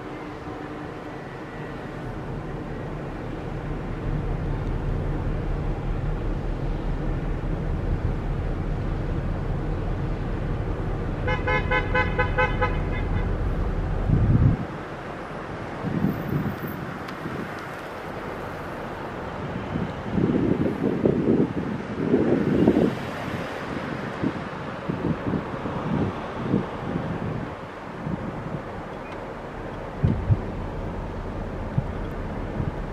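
A steady low rumble that grows louder, with a quick run of pulsed horn toots about eleven seconds in. It cuts off abruptly about halfway through, and after that wind buffets the microphone in irregular gusts.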